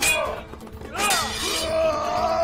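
Swords clashing in a staged fight: a sharp metallic clang with ringing right at the start and another about a second in, over shouting men and dramatic background music.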